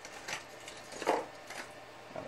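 A brief murmured vocal sound about a second in, over low room noise.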